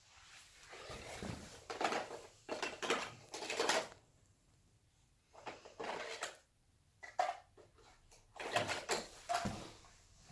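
Plastic toy tools clattering and rattling against each other and a plastic toolbox as they are rummaged through and pulled out, in several short bursts with a pause of about a second near the middle.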